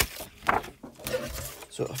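Handling noise from a paper trimmer being worked and moved on a glass craft mat: a sharp click at the start and a short scrape about half a second in. A few spoken words come near the end.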